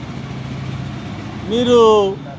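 Steady low rumble of a vehicle engine in the background, with a man's drawn-out voice coming in near the end.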